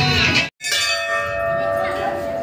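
Background music cuts off about half a second in. Then hanging brass temple bells ring: several steady tones that hang on and slowly fade.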